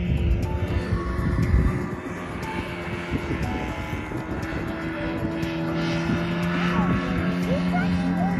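Motorboat engine running out on the river, a steady drone.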